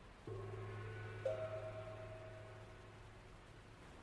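Sustained musical chord over a low steady drone, with a higher note joining about a second in, slowly fading.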